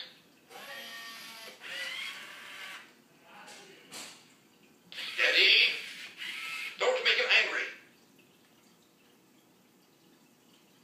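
Robosapien V2 toy robot's synthesized voice giving a string of short robotic vocal sounds, with no clear words, through the first eight seconds. After that only faint background hiss is left.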